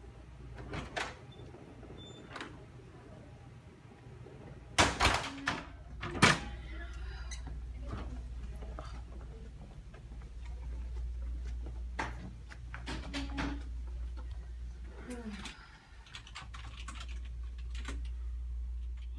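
A door in use: a few light clicks, then loud thuds about five and six seconds in, with scattered clicks afterwards over a steady low hum.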